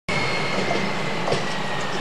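Yellow on-track maintenance machine running along the rails: a steady rail-vehicle noise with a thin high whine that slowly falls in pitch, and a couple of faint knocks.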